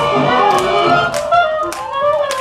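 Recorded jazz music with horns playing a melody over a steady beat, marked by sharp taps about twice a second.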